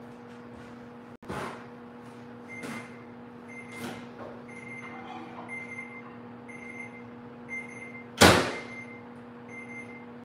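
An oven timer beeps over and over, a short beep about every three-quarters of a second, a sign that the roasting cabbage is done, over a steady low hum. A few knocks come early on, and about eight seconds in a microwave door is shut with a loud bang.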